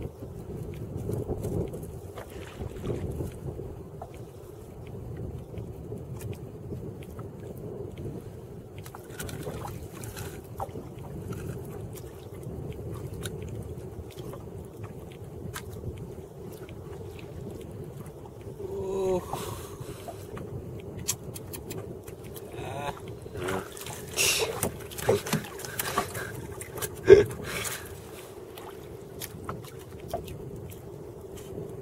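Wind and water around a wooden dugout canoe on open sea, a steady ambient wash. A short voice comes about two-thirds of the way in, and several sharp knocks and clicks on the wooden canoe follow near the end, the loudest a single knock a few seconds before the end.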